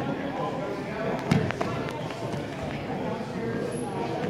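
Indistinct chatter of spectators' voices in a gym, with a single thump about a second and a half in.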